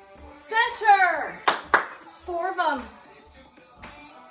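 Two sharp hand claps in quick succession, set between two falling vocal whoops, over upbeat workout music with a steady kick-drum beat.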